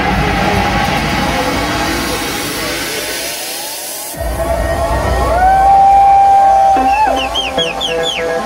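Electronic dance music from a live DJ set. The bass drops out into a breakdown under rising synth sweeps, then comes back in about four seconds in, followed by a held synth note and short rising synth chirps near the end.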